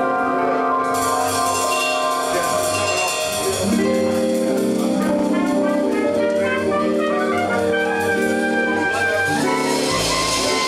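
Live jazz band playing an instrumental, with held keyboard chords and melody lines over bass guitar and a drum kit with cymbals.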